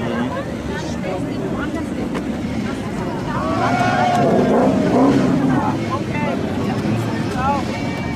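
Engines of autocross race cars over 1800 cc running hard on a dirt track, with pitch rising and falling as they rev, loudest about halfway through.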